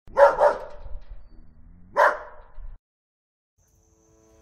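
A dog barking: two quick barks, then a single bark about two seconds in.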